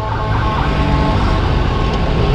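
Sport motorcycle engine running at a steady, low speed, heard from the rider's position, with wind and road noise over it.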